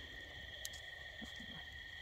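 Faint, steady high chirring of a night-insect chorus, with one small click about two-thirds of a second in.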